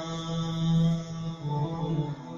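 A man's voice sings a long, chant-like held note, shifting to another note about one and a half seconds in, over acoustic guitar and bass guitar in a live ethnic-music trio.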